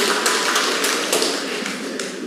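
Audience clapping in a hall, a dense patter of many hands that thins out and fades toward the end.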